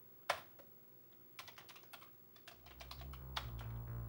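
Typing on a Commodore 64's mechanical keyboard: one sharp key click, then a quick run of keystrokes a second later. Background music fades in over the second half.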